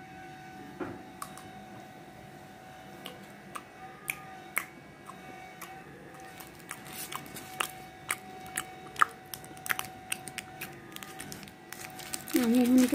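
Hands handling a box of dates and its packaging: irregular small clicks and taps, more frequent in the second half, over a faint steady hum.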